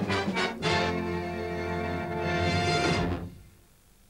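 Orchestral music ending on a long held chord that dies away after about three seconds.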